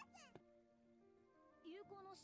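Faint anime soundtrack: a small creature character's high-pitched squeaky voice cries out twice, rising in pitch, once at the start and again near the end, over soft sustained background music.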